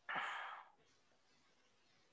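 A single short breath out, a sigh close to the microphone, lasting about half a second, followed by quiet room tone.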